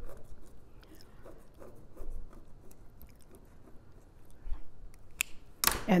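Faint, irregular scratching of a pen drawing a line on fabric along an acrylic quilting ruler, with light handling ticks. A single sharp click comes about five seconds in.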